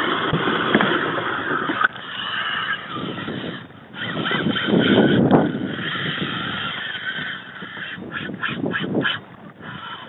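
Fishing reel drag whining in steady, slightly wavering tones as a hooked fish pulls line, over wind and water noise. It breaks briefly about four seconds in, and a quick run of short clicks comes near the end.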